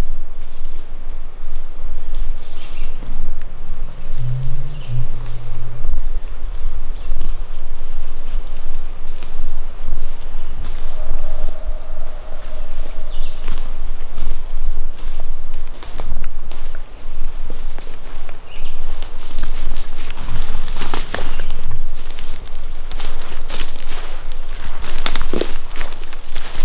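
Footsteps through leaf litter and undergrowth on a forest floor, crunching more clearly near the end as the walker comes closer, over a steady low rumble.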